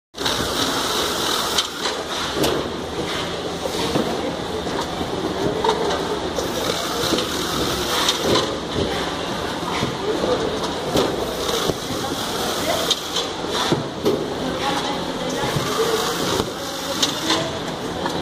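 Semi-automatic carton taping machine running, a steady mechanical noise with frequent short clicks and knocks, with indistinct voices behind it.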